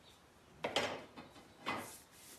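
Wooden arrow shaft drawn through a folded abrasive held in the hand: two short rasping strokes about a second apart, a light sanding to knock off high spots in the dried finish.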